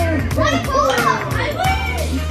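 Children shouting and squealing excitedly while playing air hockey, over background music with a heavy bass beat.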